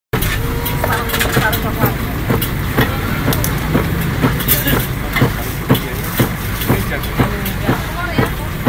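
A steady run of sharp knocks, about two a second, over a low steady rumble and faint voices.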